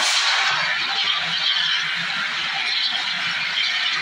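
CO2 fire extinguisher discharging through its horn in a loud, steady hiss, its wheel valve opened, as the gas is aimed at the base of a burning tray.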